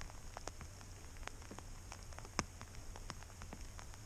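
Light rain: scattered drops ticking sharply on the GoPro action camera's housing, one stronger tick about halfway through, over a low steady rumble.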